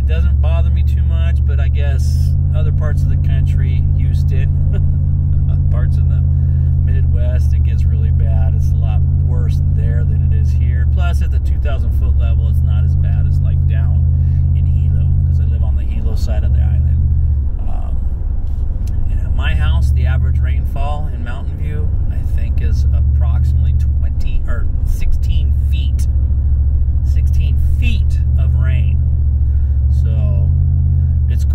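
Steady low rumble of a car's engine and tyres heard inside the moving car's cabin, easing briefly a little past the middle. A man's voice talks over it.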